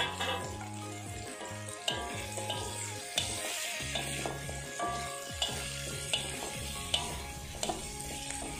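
Sliced carrots and green chillies sizzling in oil in a metal wok, stirred with a slotted metal spatula that clicks and scrapes against the pan about once a second. Carrot slices land in the hot oil at the start. Background music plays underneath.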